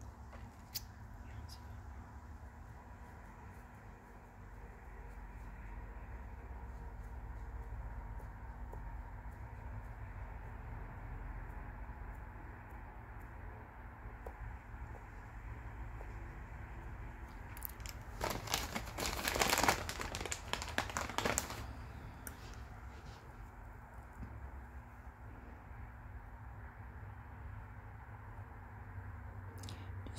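Steady low room hum with faint handling noise, broken about two-thirds of the way through by a few seconds of rustling and scraping as a foam sponge is dabbed against a doll foot to dry the varnish in its creases.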